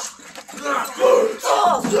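Several people shouting and yelling during a staged brawl, loud voices starting about half a second in.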